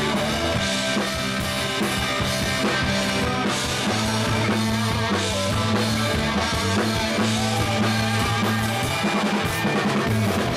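Live rock band playing: electric guitars over a drum kit, with held low notes and a steady beat of drum strikes.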